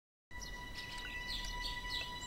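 Birds chirping in an outdoor ambience bed that cuts in suddenly after a moment of silence, with a faint steady high tone beneath the short chirps.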